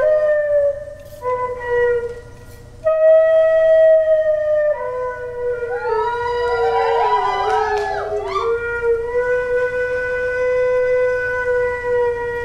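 Dance music led by a reedy wind instrument playing long held notes, with a quick ornamented run of notes in the middle, then settling into one long steady note.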